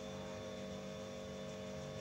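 Faint steady electrical hum over a light background hiss, with no other sound.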